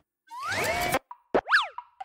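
Cartoon transition sound effects: a rising whistle-like glide that levels off into a held tone, then in the second half a short, quick glide up and back down in pitch.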